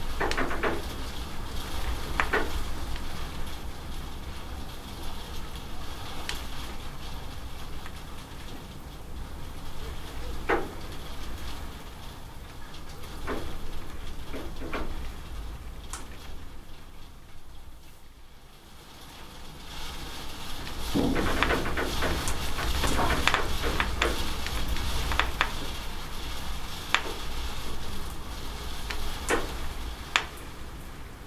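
Rain falling steadily with water dripping and splashing off a roof edge: a constant hiss with scattered sharp drop hits. It eases a little around the middle, then grows heavier and denser again for the rest.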